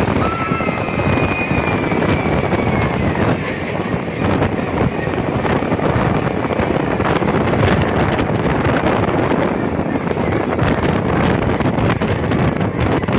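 Passenger train running, heard from an open doorway: a steady rumble of wheels on the track mixed with wind buffeting the microphone, with a faint thin high whine during the first three seconds.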